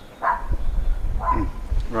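Two short yelping animal calls, one about a quarter second in and one past halfway, over a low rumble.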